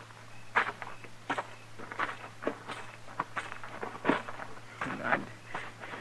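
Radio-drama sound-effect footsteps walking at an even pace, about one step every two-thirds of a second, over a low steady hum from the old recording.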